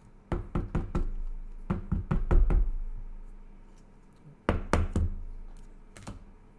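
A quick series of sharp knocks against a tabletop, in three bursts of four or five strokes each, with a dull thud carried through the table under them.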